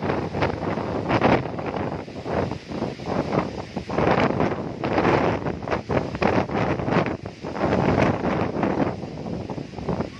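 Strong gusty wind buffeting the microphone, a loud rushing noise that swells and falls away in gusts.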